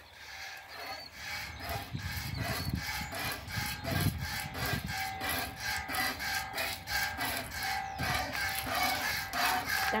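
Hand milking a Jersey cow: squirts of milk from the teats hitting the bottom of a nearly empty stainless steel pail, in a quick, even rhythm of rasping strokes that build up about a second in and carry on steadily.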